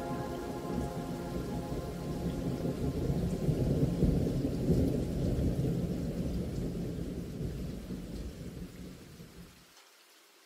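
Rolling thunder with rain, a low rumble that swells about four seconds in and then dies away, cutting off just before the end. The last notes of a soft music track fade out at the start.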